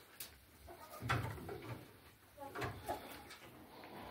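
Hens giving a few faint, short, low calls: once about a second in, and a few more in the second half.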